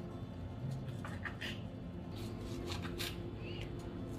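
Kitchen knife cutting mandarins on a wooden cutting board: a series of light, irregular taps and clicks.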